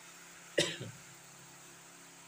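A single short cough, about half a second in, sharp at the start and quickly dying away.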